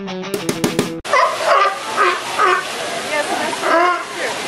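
Guitar-and-drum intro music cuts off about a second in. A California sea lion then barks several times in short calls over the steady rush of a waterfall.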